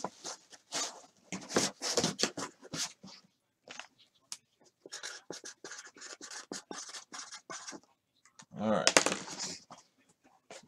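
Pen scratching on a cardboard box in short, quick strokes from about five seconds in to nearly eight, after a run of short scuffs as the box is handled.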